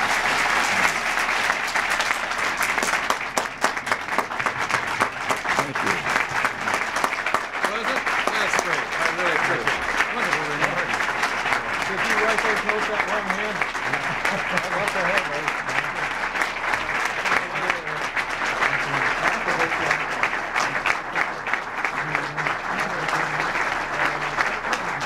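Audience applauding steadily, with indistinct talk underneath.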